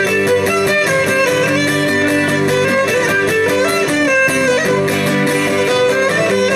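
Cretan lyra playing a dance melody over fast, steadily strummed laouto accompaniment, an instrumental passage of Cretan folk music.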